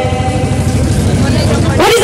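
A woman's held sung note over a microphone fades out, leaving a low rumble. A singing voice comes back in with a rising pitch near the end.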